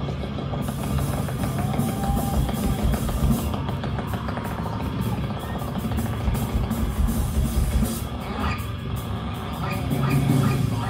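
A rock band playing live, with a loud drum kit and bass driving a dense, heavy wall of sound and pitched guitar or vocal lines gliding over it.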